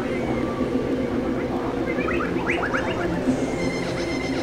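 Experimental synthesizer drone: a steady low hum of stacked tones, with a quick cluster of short rising chirps about halfway through.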